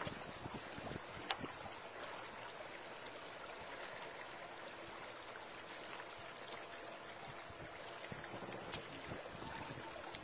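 Steady rush of water and wind around a small boat under way on a lake, with a few faint knocks.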